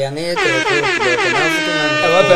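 An air horn sound effect starting about half a second in, its pitch dipping slightly and then holding steady, with men's voices underneath.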